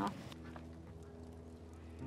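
A soft, sustained chord of background music fading in about a third of a second in, under a pause in the talk.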